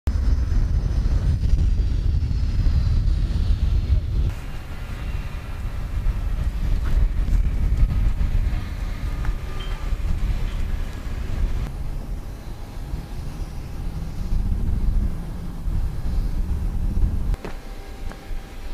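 Loud, steady low rumbling noise with faint high whining tones above it, shifting abruptly about four, twelve and seventeen seconds in.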